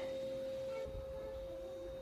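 A steady mid-pitched pure tone that holds one unchanging pitch, with faint low rumble beneath it from about a second in.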